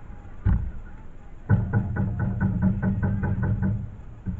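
A single thud about half a second in, then a fast, even run of drumbeats, roughly eight a second, for about two seconds.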